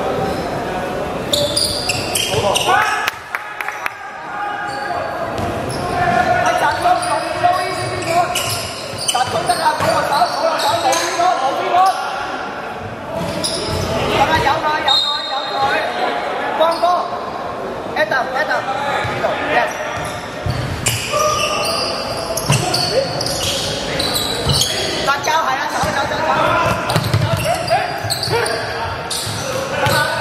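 A basketball bouncing again and again on a hardwood court, with players' voices, echoing in a large sports hall.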